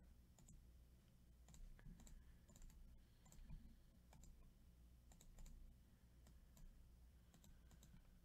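Faint, irregular clicks of a computer mouse and keyboard, heard over near-silent room tone.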